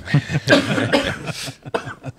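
Men laughing in short breathy bursts, with coughing mixed in.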